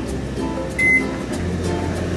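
Background music over a microwave oven: a short keypad beep just under a second in, then the oven's low hum grows stronger as it starts running.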